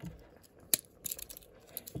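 Small metal clicks of Victorinox pocket-knife scissors being pried out of the handle: one sharp click a little under a second in, then a few lighter clicks and scrapes.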